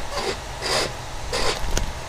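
Hands sliding and pressing over stretched vinyl wrap film on a bumper, giving about four short rustles, over a steady low hum.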